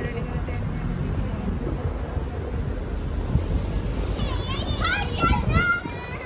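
Busy high-street ambience: steady low traffic rumble with passers-by talking, and a high-pitched voice calling out several times in the last two seconds.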